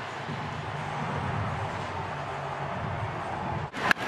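Ballpark crowd noise, a steady rumble from a packed stadium, then near the end a single sharp crack as the bat hits the pitch.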